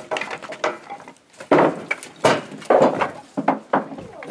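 Split firewood logs being tossed and stacked into a galvanised metal box trailer: an irregular run of wooden knocks and clatters against the trailer bed and the other logs, with several louder ones in the second half.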